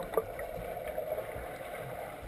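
Muffled, steady underwater wash of a swimmer kicking past, heard with the camera submerged in the pool.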